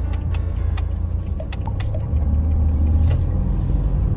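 Low, steady rumble of a Toyota HiAce van driving slowly, heard from inside the cab, with a few light clicks.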